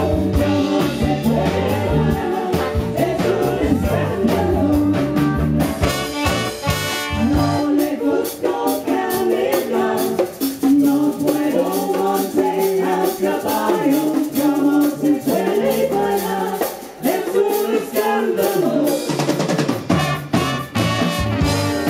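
Live band with saxophones, trombone, keyboards and drums playing, with a man singing. About seven seconds in the bass and drums drop away, leaving the voice and lighter instruments, and the full band comes back in near the end.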